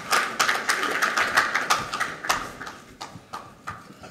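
Audience applauding, the clapping thinning out and fading over the last second or so.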